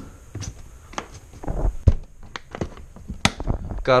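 A DJI Phantom 4's grey foam carrying case being handled and shut, giving a run of scattered taps and clicks. The loudest is a sharp click about three seconds in, as the latch is fastened.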